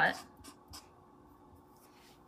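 Felt-tip marker writing on construction paper: a few short, faint strokes just after a spoken word at the start.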